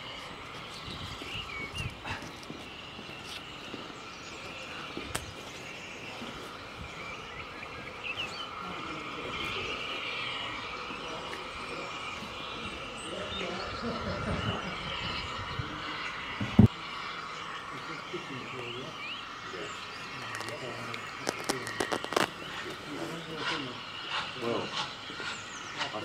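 Bulleid Battle of Britain class steam locomotive 34070 Manston drifting slowly in with a steady hiss of steam, then its wheels clicking in quick runs over the pointwork near the end. One sharp, loud thump about two-thirds of the way through.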